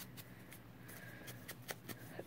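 Faint rustle of a paper strip being handled and rubbed with a round foam ink blending tool, with a few soft ticks.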